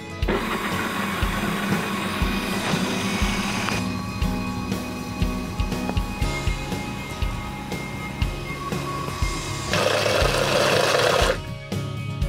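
Countertop blender running in two bursts, blending a red smoothie mixture: about four seconds at the start, then a louder, shorter burst of about a second and a half near the end.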